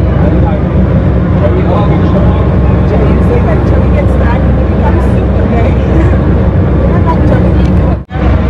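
Car ferry's engine running with a steady low rumble, heard from the open deck.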